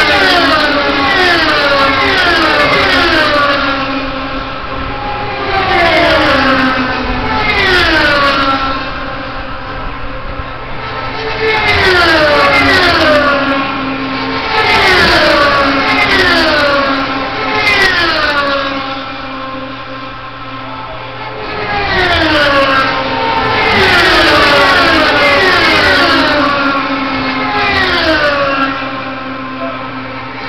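IndyCars, Honda 3.5-litre V8s at full speed, passing one after another. Each car's high engine note drops in pitch as it goes by, and the passes come in waves, several cars close together, then a short lull.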